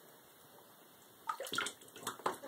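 Otter swimming in bathtub water: quiet at first, then a run of splashes and sloshes starting a little over a second in.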